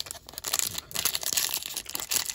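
Crinkling and crackling of a foil baseball-card pack wrapper as it is gripped and torn open at its top seam, starting about half a second in.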